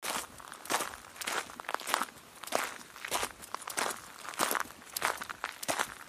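Footsteps sound effect of several people walking, a steady run of steps at about two a second.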